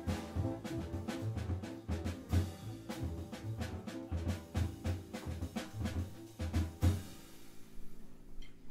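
Live jazz piano trio of acoustic piano, upright double bass and drum kit playing a rhythmic passage with accented drum and cymbal hits. The music stops on a final hit about seven seconds in and rings away.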